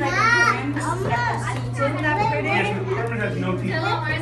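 Children's voices chattering and calling out over other people's talk, with a high-pitched child's exclamation right at the start and a steady low hum underneath.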